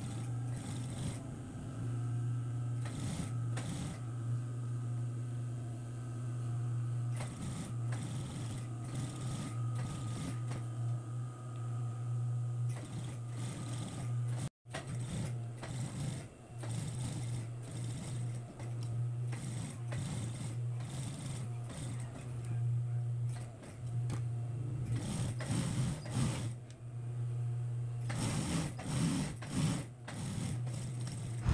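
Industrial single-needle lockstitch sewing machine stitching fabric: a steady motor hum throughout with repeated short runs of stitching. The sound cuts out briefly about halfway through.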